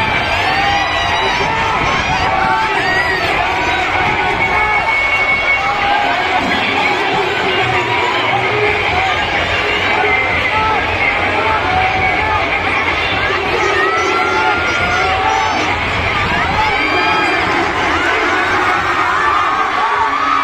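Large crowd of schoolchildren cheering and shouting, many voices overlapping in a continuous din.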